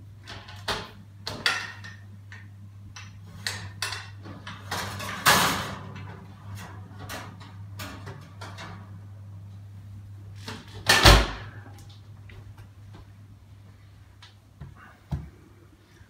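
An oven door being opened and a glass baking dish being handled on the oven rack: a series of clicks, knocks and scrapes over a steady low hum. About eleven seconds in, a loud heavy thump as the oven door is shut.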